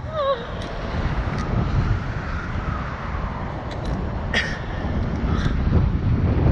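Wind rushing over the on-ride camera's microphone as the slingshot capsule swings through the air, a steady low rumble, with a brief falling cry from a rider at the very start and a few small clicks.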